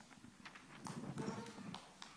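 Faint hall room sound: distant low voices and a few light knocks, such as footsteps or handling on a wooden floor.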